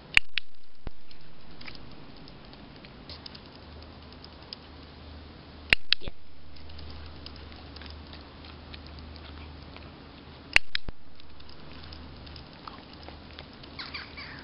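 A dog-training clicker clicking three times, about five seconds apart, each a quick double click-clack, marking the dog crossing its paws. Faint patter and small ticks come between the clicks.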